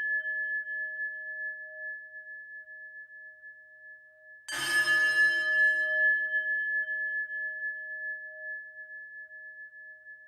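A meditation bowl struck twice. The ring of the first strike is fading away at the start. A second strike comes about four and a half seconds in, and its long, wavering ring dies away slowly.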